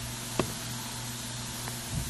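Emergen-C effervescent vitamin drink fizzing in a mug: a steady soft hiss of bubbles, with one faint click about half a second in.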